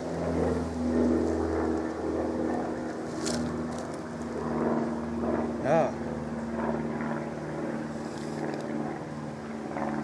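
Steady low drone of a distant engine running throughout. A brief voice-like sound, rising and falling in pitch, comes about six seconds in.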